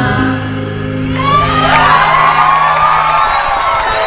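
A live band's last chord holding and dying away, with the low notes stopping near the end. About a second in, the audience breaks into cheering and whoops.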